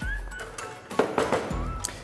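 Background music, with a sharp click near the end.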